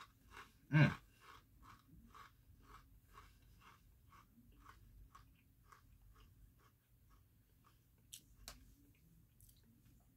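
A person chewing a crunchy Fuego Takis rolled tortilla chip. It is a regular run of faint crunches, about three a second, that fade out over several seconds as the chip is chewed down, with two slightly louder crunches near the end.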